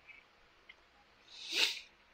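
A person's short, hissy breath, swelling and fading over about half a second, about a second and a half in.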